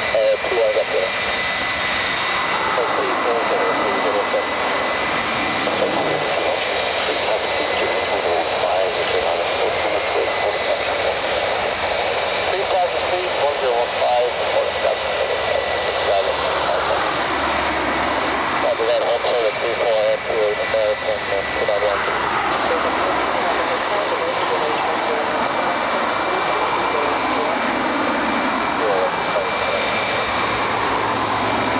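Boeing 757-200's Rolls-Royce RB211-535E4B turbofan engines running at low taxi thrust as the airliner rolls slowly onto the runway: a steady roar with a high whine.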